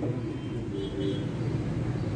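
Steady low background hum and rumble with no speech.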